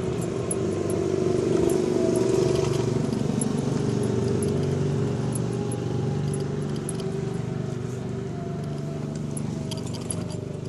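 Electric trike riding along a road: steady rumble of tyres and wind, with a faint whine that rises and falls and small rattling clicks from loose parts.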